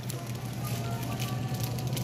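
Store background: a steady low hum with faint music playing, and crackling rustle close to the microphone.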